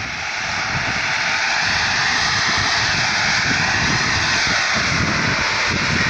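Gas and drilling mud blowing out of an oil well under pressure, an uncontrolled surge during workover, heard as a loud, steady rushing hiss that swells over the first second and then holds.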